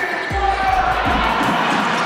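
A basketball dribbled on a hardwood court, thumping about twice a second, over steady arena crowd noise.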